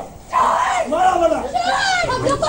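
A young woman screaming and wailing in distress, her high voice rising and falling in long cries after a brief lull at the start.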